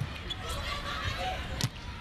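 Volleyball struck by players' hands during a rally: a sharp hit about half a second in and a louder one near the end, over steady arena crowd noise.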